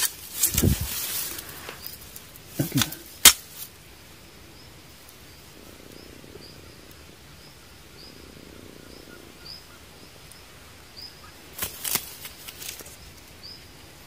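Close handling noise: sharp knocks and rustles near the start, around three seconds in and again near twelve seconds, from a gloved hand handling a dirt-covered stone and a lapel microphone whose wire is tangling. Behind it, a faint high chirp repeats about once a second.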